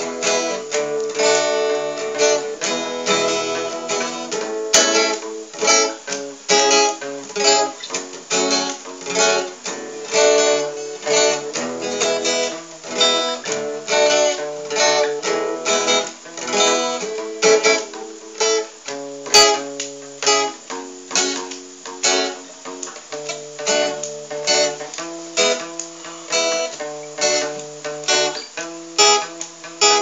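Acoustic guitar playing an instrumental passage of plucked and strummed chords, with no singing.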